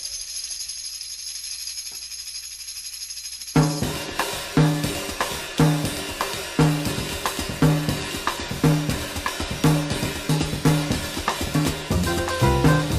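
Opening of a 1970s small-group jazz track: a faint high shimmer, then the drum kit and bass come in sharply about three and a half seconds in. A low figure repeats about once a second over steady cymbal and hi-hat time.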